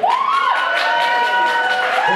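Audience cheering: several people let out long, high whoops that hold steady for more than a second, one voice rising and falling at the start.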